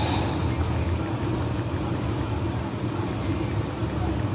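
Steady low rumbling background noise with no speech and no distinct events.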